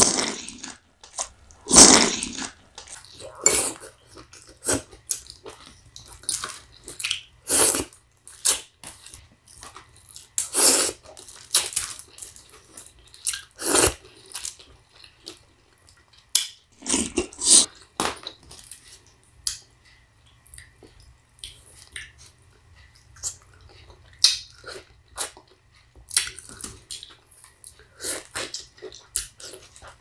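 Close-miked eating sounds of garlic-butter lobster tail and citrus: irregular short bites, chewing and mouth noises, with the handling of lemon and orange pieces.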